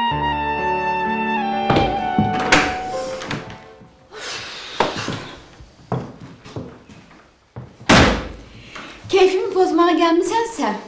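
Clarinet-led background music breaks off under two seconds in. It is followed by a run of sharp door thuds and knocks at uneven spacing, the loudest about eight seconds in. A woman's voice starts near the end.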